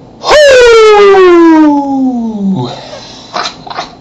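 A man's loud, drawn-out vocal wail that jumps up and then slides steadily down in pitch for about two and a half seconds, followed by a few short clicks near the end.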